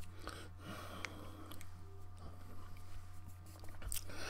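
Faint mouth sounds of a man tasting grape e-liquid, with a few small clicks, over a low steady hum.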